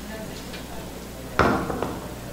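Quiet room tone, then a single sharp knock about one and a half seconds in, followed by two lighter clicks, as a person gets up from a chair at a stone-topped desk.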